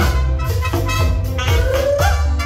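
Live band music: two trumpets and two saxophones playing a horn line over electric bass and drums, with a note sliding upward near the end.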